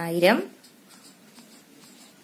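Felt-tip marker writing figures on paper: faint, light scratching strokes.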